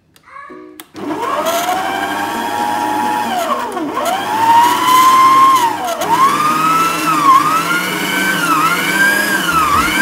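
Electric stand mixer motor starting about a second in and whirring as its whisk beats egg whites. The pitch of its whine rises and dips several times as the speed dial is turned back and forth.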